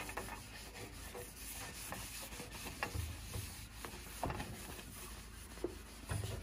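Cloth with polishing compound rubbing along the metal resonator of an old organ tuba reed pipe, clearing away old surface dirt. Faint, steady rubbing strokes with a few light knocks.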